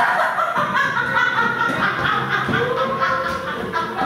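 A person laughing in a long run of short, quick bursts.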